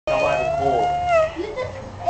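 A child's high-pitched voice holding one drawn-out note for about a second, then falling away, with a second, lower voice briefly underneath.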